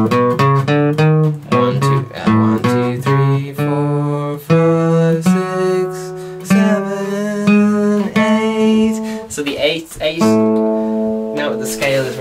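Acoustic guitar plucked with the fingers: a quick run of single notes over the first second or so, then a series of chords and two-note octave shapes, each left to ring.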